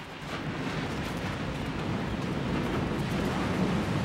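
Surf on a beach: a steady rumbling wash of waves that slowly builds.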